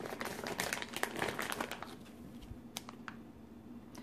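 Clear plastic packaging crinkling in quick, irregular crackles as a wax melt is handled and pulled out of its bag. The crackling is densest in the first two seconds, then thins to a few scattered clicks.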